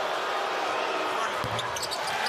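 A basketball thuds once about one and a half seconds in, over steady arena background noise. A few short high clicks follow just after it.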